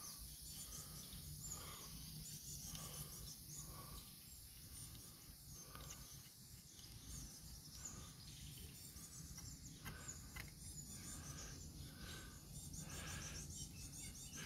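Faint outdoor background: distant birds chirping over a steady high hiss, with a few faint light ticks.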